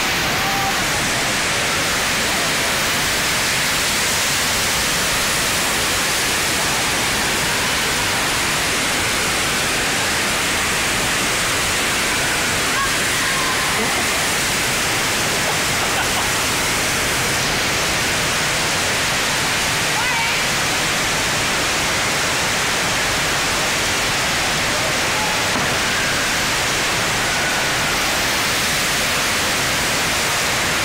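A FlowRider surf simulator's pumped sheet of water rushing steadily up its ramp, a loud, unbroken rush of water.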